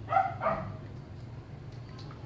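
A dog barks twice in quick succession, two short barks about a third of a second apart, near the start.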